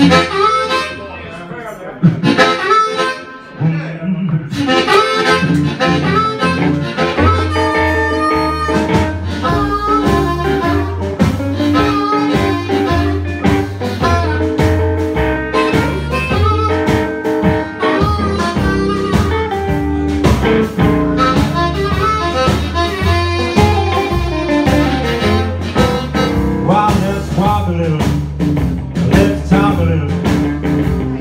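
Live blues band: an amplified harmonica played into a cupped microphone leads, with electric guitar, and double bass and drums coming in fully about four seconds in.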